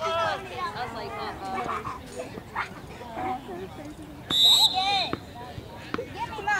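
Indistinct shouts and calls from players and spectators across the field, with one short, shrill whistle blast about four seconds in, the loudest sound, typical of a referee stopping play.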